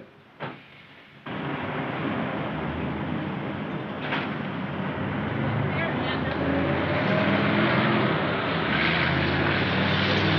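A motor vehicle's engine running amid road noise. It cuts in abruptly about a second in and grows slowly louder.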